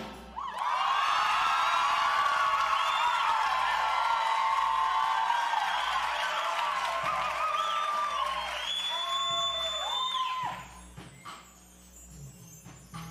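Audience screaming and whooping after a show choir number ends, with a long high whistle near the end. The cheering dies down about ten and a half seconds in.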